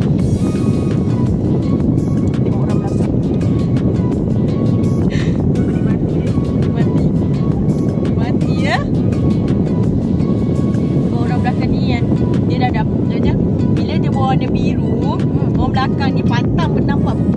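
Car air-conditioning blower running inside the cabin, a loud steady rushing noise that doesn't let up.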